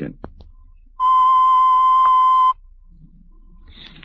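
A single steady electronic beep tone, high-pitched and loud, starting about a second in and cutting off sharply after about a second and a half.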